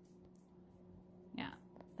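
Quiet room tone with a faint steady hum, broken by a single soft spoken "yeah" about a second and a half in.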